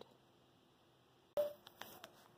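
Near silence, broken about a second and a half in by a sudden click, a brief faint tone and two faint ticks.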